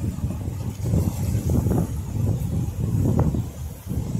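Wind buffeting the microphone: a loud, uneven low rumble, with a few faint short knocks from hands prying at a shell in a rock pool.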